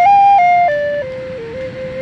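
Native American-style wooden flute playing a slow melody in clear, held notes: a high note about half a second long, then a step down to a lower note, and a softer, lower note held from about a second in.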